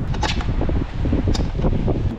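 Wind buffeting the microphone: a fluctuating low rumble, with a couple of faint clicks.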